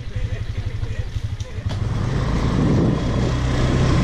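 A small motorbike engine running, getting louder about two seconds in.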